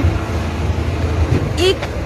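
Steady low rumble of trucks and vehicles, with a short spoken word near the end.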